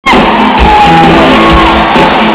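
Live rock band playing electric guitars, bass and drums, heard very loud from the audience, starting abruptly. A voice lets out a drawn-out, falling whoop over the music.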